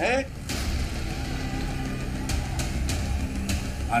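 Outdoor street and crowd noise from a phone-style recording: a steady low rumble with scattered sharp clicks.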